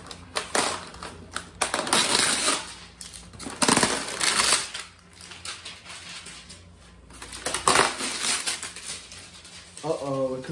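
Packaging being handled as a BB gun is unboxed: a white foam tray and its contents rustling, scraping and clattering in irregular bursts, loudest about two, four and eight seconds in.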